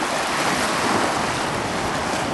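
Ocean surf washing over shoreline rocks, a steady rush of moving water that swells about halfway through as a wave surges in.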